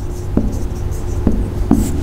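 Marker pen writing on a whiteboard: a few short, quick strokes and taps as letters are written.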